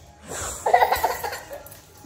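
A child laughing in a short burst of giggles, starting about half a second in.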